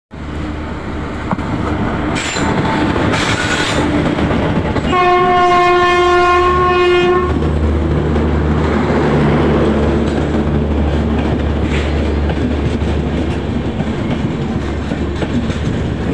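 An Indian Railways electric locomotive blows its horn once for about two seconds near the middle, as a passenger train rolls past along the platform with steady, loud wheel and rail noise. A low hum follows as the coaches, including a generator car, go by.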